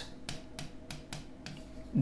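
A few light, sharp clicks of a stylus tapping and stroking on an interactive touchscreen board while letters are written.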